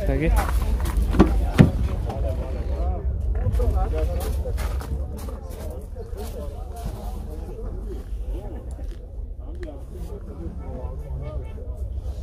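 Indistinct voices talking in the background over a steady low rumble, with two sharp knocks about a second and a half in.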